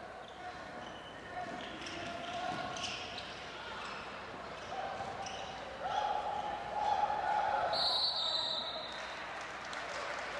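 Basketball game sounds on a hardwood court: a ball dribbling, sneakers squeaking and crowd voices. The crowd grows louder from about six seconds in, and near the end a sustained high whistle blast from the referee calls a foul.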